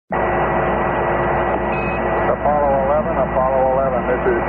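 Apollo air-to-ground radio channel hissing with static and a steady whine, cut off above the voice range like a radio link. A voice comes through the radio about two and a half seconds in.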